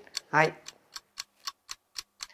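Clock-ticking sound effect, even ticks about four a second, timing a pause for the viewer to answer a quiz question.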